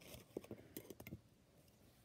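Near silence, with a few faint clicks and taps in the first second or so from hands handling the fabric block and its paper pattern.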